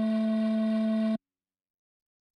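A sustained electronic synthesizer note from the song, a steady buzzy pitched tone that cuts off suddenly just over a second in, leaving dead silence.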